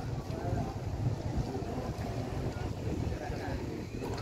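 Wind buffeting the microphone outdoors, a low, uneven rumble, with faint voices in the background.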